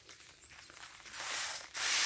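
Hand-pump pressure sprayer wand misting liquid foliar fertilizer onto seedlings: a short hiss of spray about a second in, lasting under a second.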